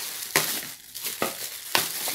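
Clear plastic bag crinkling and rustling as it is gripped and handled, with a few sharper crackles.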